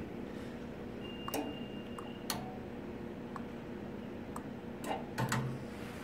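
K&S 4522 wire ball bonder running with a low steady hum, its mechanism giving scattered sharp clicks while the chessman control is moved. About a second in, a thin high tone sounds for about a second.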